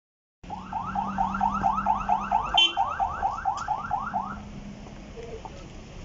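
Car alarm siren whooping, a fast run of rising sweeps about four a second, starting suddenly and stopping after about four seconds.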